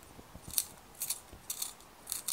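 A Derwent Studio coloured pencil being sharpened in a handheld Jakar Trio 3-way pencil sharpener: the blade shaves the wood in a few short scraping strokes.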